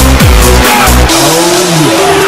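Electronic dance music: a steady, pounding kick drum and bass beat that drops out about a second in, leaving a held synth note and a tone that sweeps up and back down.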